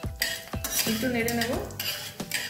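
A metal spatula scraping and clinking against a karahi as black cumin (nigella) seeds sizzle and crackle in hot mustard oil.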